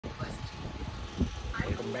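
Low rumbling and a few bumps from a camera being handled close to its microphone. A man starts speaking near the end.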